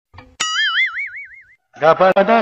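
Cartoon 'boing' sound effect: a sharp twang followed by a wobbling, fading tone that lasts about a second. Music starts up near the end.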